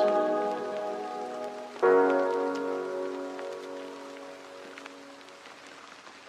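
The close of a slow song: a held chord fades, then a last chord is struck about two seconds in and slowly dies away. As it does, steady rain with scattered single drops is left alone.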